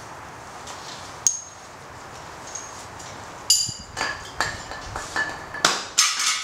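Steel hand tools clinking and ringing against metal. There is a single sharp clink about a second in, then a quick run of ringing metallic clinks over the last few seconds.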